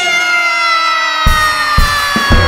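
A female singer holding one long note, scooped up into and then slowly sinking in pitch, over a live reggae band. Drum hits come in about halfway through.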